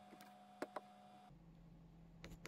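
Near silence: faint steady room hum, with two faint quick clicks a little over half a second in.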